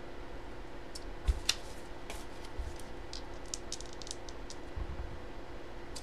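A scatter of small sharp clicks and taps: two louder ones a little over a second in, then a run of lighter ones over the next few seconds.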